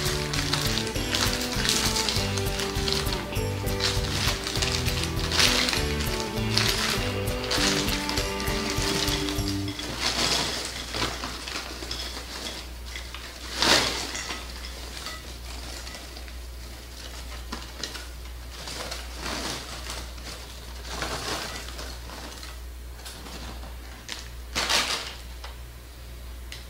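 Background music for the first ten seconds or so, over the rustle of a paper bag being opened. After the music stops, popped popcorn is poured from the paper bag onto a glass plate with crinkling paper, loudest about fourteen seconds in, over a low steady hum.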